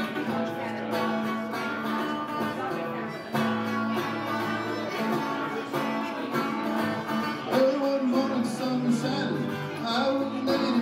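Guitar strumming the chords of the song's intro in a steady rhythm, with a harmonica joining in with wavering, bent notes in the second half.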